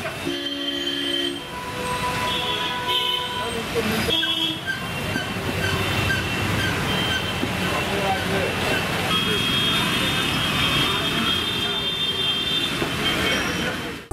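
Street traffic on a wet road: a steady hum of passing vehicles with several horns sounding, and a run of short, evenly spaced beeps in the middle.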